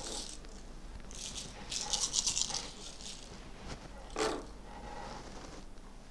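A handful of cowrie shells rattling and clicking against each other as they are shaken in the hands for a divination cast. The quick clicking starts about a second in and lasts about a second and a half, and a single short click follows later.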